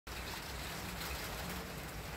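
Light rain falling outdoors, a steady soft hiss.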